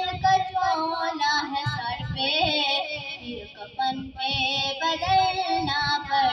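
A high voice singing a melodic passage of an Urdu devotional song about the hereafter, over low thumping beats.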